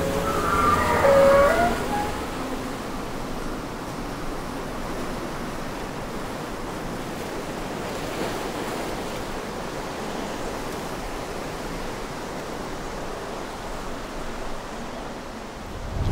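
Steady rushing surf-like ambience, with a short, wavering creak in the first two seconds as a wrought-iron gate is pushed open.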